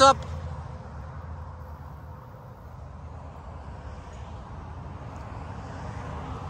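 Distant road traffic: a steady low rumble with no distinct events.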